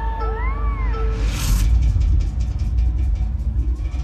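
Music over a stadium sound system, heard through a phone's microphone: a synth tone swoops up and back down, a whoosh rises about a second and a half in, and then a beat starts with fast ticking over heavy bass.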